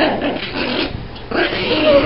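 A Great Dane puppy and a small terrier play-fighting, with irregular rough dog growls and grunts.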